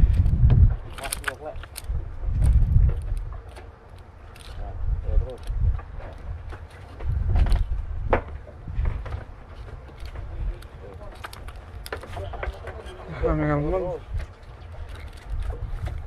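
Wind gusting on the microphone in irregular low rumbles, with scattered sharp clicks and knocks from handling a fish held in a metal lip grip. A short burst of a man's voice comes near the end.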